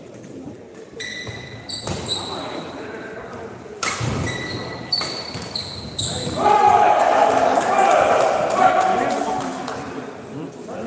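Badminton players' shoes squeaking on the court floor, with several sharp racket hits on the shuttlecock during a rally. Loud shouting voices follow from about six and a half seconds in, the loudest part, echoing in a large hall.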